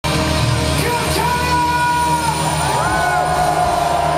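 Live rock band playing loudly, with a man singing long held notes that slide up and down in pitch over electric guitar and drums.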